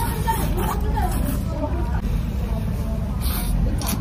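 Indistinct chatter of other diners over a steady low rumble, with close chewing and a brief crunchy bite a little past three seconds in.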